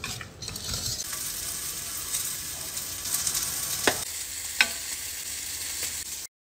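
A wire whisk stirring in a bowl: a steady scraping hiss, with two sharp taps about two-thirds of the way through.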